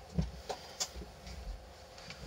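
A few faint, light clicks and taps as multimeter test leads are handled and brought to a small battery's terminals, over a faint steady hum.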